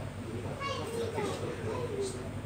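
Indistinct murmur of several voices in a room, with a child's high voice heard briefly about half a second in.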